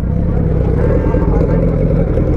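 Suzuki Hayabusa sportbike's inline-four engine idling steadily with a low, even rumble.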